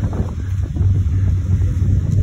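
A boat's engine running steadily under way, a constant low hum, with wind buffeting the microphone.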